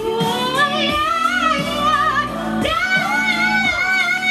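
A high singing voice in a pop song, holding long notes with vibrato over backing music, with a new phrase rising in pitch past the halfway point.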